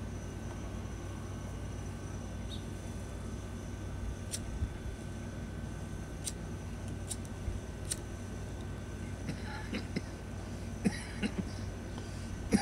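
A steady low background rumble with a few sharp clicks. Near the end come several short pitched sounds.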